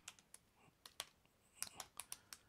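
Faint keystrokes on a computer keyboard: about ten short, irregularly spaced key clicks as a command is typed.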